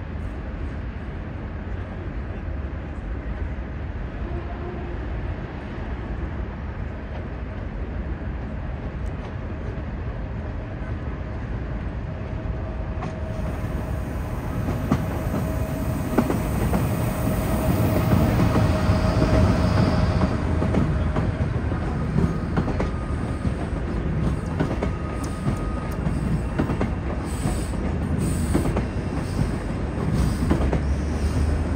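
Afrosiyob high-speed train, a Spanish-built Talgo electric trainset, running slowly past below along the station tracks. Its rumble grows from about halfway and is loudest a few seconds later, with a steady whine over it. Sharp clicks of wheels over rail joints come near the end.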